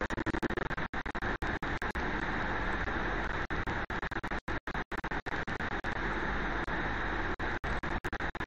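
Steady background noise of the recording, a hiss over a low rumble. It is cut by frequent brief dropouts to silence.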